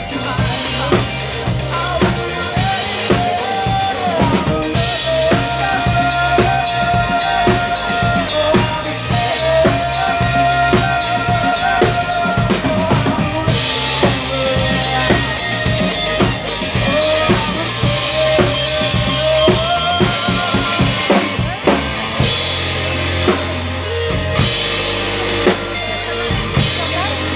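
Live rock band playing a passage without vocals: drum kit, electric guitar and bass guitar, loud and steady, with held, bending lead notes in the middle and heavier bass in the last few seconds.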